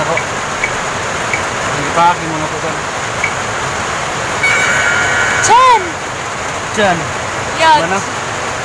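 Spin-the-wheel phone app ticking as its wheel turns, the clicks slowing and spacing out until it stops about three seconds in, then a short electronic jingle about four and a half seconds in. Voices exclaim and talk over a steady background hiss.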